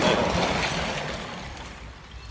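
Wind rushing over a handheld camera's microphone, loudest at first and dying away over about two seconds.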